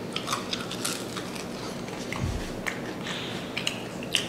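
Mouth chewing a crispy breaded fried chicken wing: many small crunches and crackles, with a dull thump about two seconds in.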